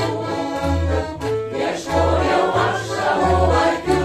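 Piano accordion playing a song accompaniment, with regularly repeating low bass notes under the melody, and a mixed choir singing with it.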